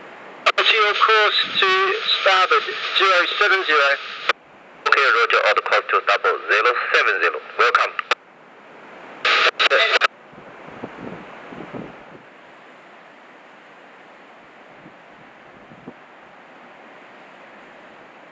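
Marine VHF radio traffic: three bursts of thin, clipped radio speech that start and stop abruptly over the first ten seconds, then only a steady hiss of wind and surf.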